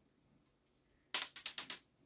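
About a second in, a quick run of five or six small, crisp clicks and crackles as fingers pick at the dry, budded twigs of a small larch bonsai.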